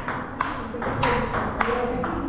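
Table tennis rally: the celluloid ball ticking sharply off the bats and the table top in a quick run of clicks, several in two seconds.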